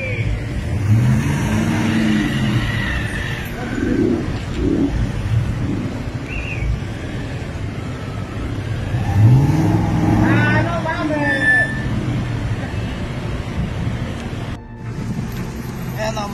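Street traffic: vehicle engines running and passing, one rising in pitch about nine seconds in as it accelerates, with indistinct voices mixed in. The sound cuts off suddenly near the end.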